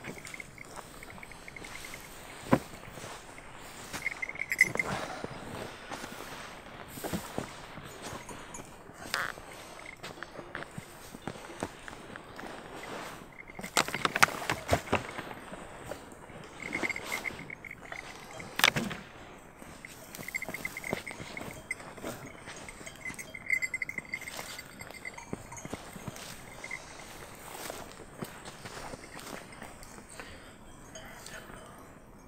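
Rustling and scattered soft knocks and clicks as a heavy shaggy sheepskin coat and blankets are handled and put on, with footsteps on grass. A faint high tone comes and goes in the background.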